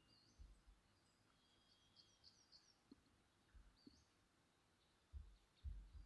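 Near silence: faint background with a few distant bird chirps in the first few seconds and several soft low thumps, the strongest near the end.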